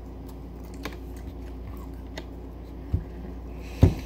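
People chewing bites of raw green cayenne pepper: faint crunching clicks over a steady low hum, with a thump about three seconds in and a louder one near the end.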